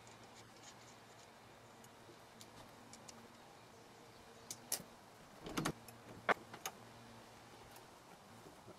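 A handful of light clicks and knocks in the second half as hands work the metal hinge hardware of a Westfalia pop-top, over a faint steady hum.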